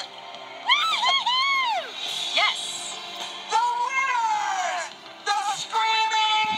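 Cartoon soundtrack of background music with excited cheering voices: a few quick rising-and-falling cries about a second in and a long falling cry around four seconds in.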